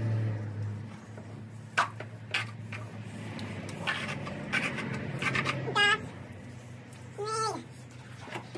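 Steady low hum of a propane camping-shower water heater running, with scattered knocks and scrubbing from washing a pony's legs. About six seconds in come two short, high-pitched cries, the second falling in pitch.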